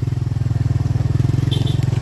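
Motorcycle engine running steadily while the bike is under way, heard from on the bike.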